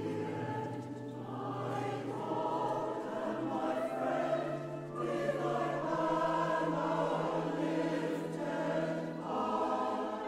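Mixed SATB choir singing sustained chords in a large, reverberant church.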